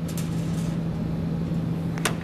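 Steady low mechanical hum holding one constant pitch.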